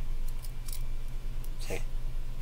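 A few faint light clicks from the plastic bottom half of a ThinkPad X240 trackpad being handled and turned in the hand, over a steady low hum, with a short vocal sound near the end.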